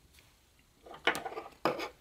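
Near silence, then from about the middle a few light knocks and brief rustles of hands handling yarn and small objects on a wooden tabletop.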